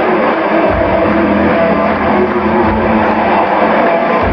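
Live rock band playing, with electric guitar over a drum beat and low thumps about once a second. The sound is recorded from the audience and comes across dull, with the treble cut off.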